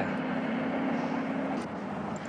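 Vehicle engine running with a steady low hum over an even hiss; the hum drops out near the end.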